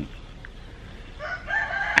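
A rooster crowing, a single drawn-out call that starts a little over a second in and carries on past the end.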